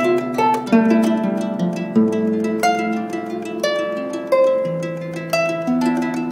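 Harp played live by hand: plucked notes ringing on and overlapping one another, with low bass notes sounding underneath the melody.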